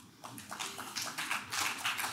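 Audience applauding, a dense patter of many hands that starts a moment in and builds.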